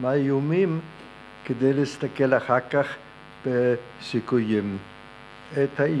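A man speaking into a microphone in short phrases with brief pauses, over a steady electrical hum.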